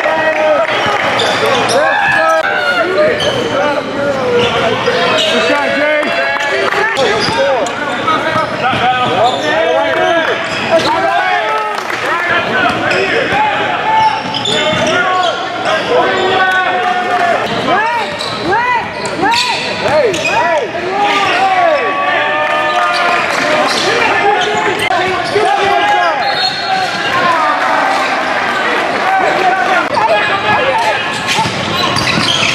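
Live basketball game sound in a large gym: the ball bouncing on the hardwood court, sneakers squeaking and players' voices calling out.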